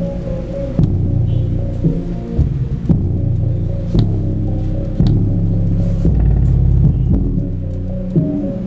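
Bass-heavy electronic dance music played loud through the CDR King Jargon 2.1 system's subwoofer, with deep bass and a sharp hit about once a second.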